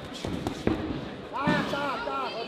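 Boxing gloves landing on a covering guard: three quick thuds within about half a second, followed about a second and a half in by a loud shout from ringside.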